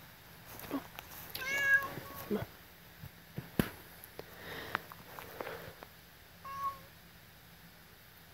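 A domestic cat meowing twice: a longer meow about a second and a half in and a short one near the end. Between the meows come sharp crackles and snaps of dry leaves and sticks underfoot.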